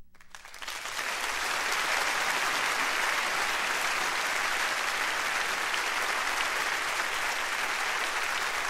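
Audience applause, rising over the first second and then holding steady.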